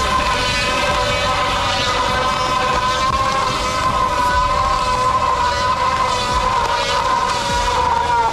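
Electric motorbike doing a stationary burnout: the rear tyre spins against the asphalt with a loud, steady high whine that holds one pitch with a slight waver.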